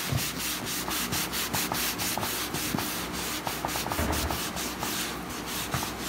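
A gloved hand briskly rubbing a synthetic tattoo practice skin with a wipe, about four back-and-forth wiping strokes a second, to clean excess ink off a fresh tattoo.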